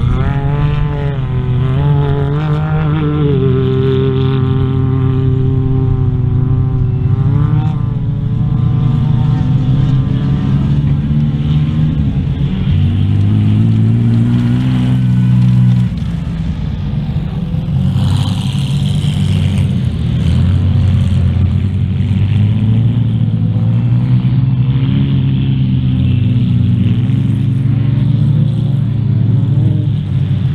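Engines of off-road race cars and 4x4s running hard on a dirt track, rising in pitch under acceleration, holding, then falling off as they lift or shift. There is a steady mixed drone of several engines throughout, with a brief lull about halfway.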